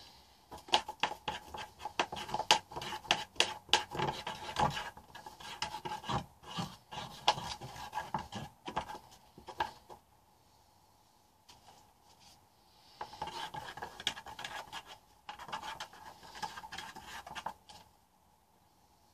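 Quick, repeated scraping and rubbing strokes as paint is worked by hand across a painting surface without brushes. The strokes come in a dense run for most of the first ten seconds, stop, then start again at a lighter level near the end.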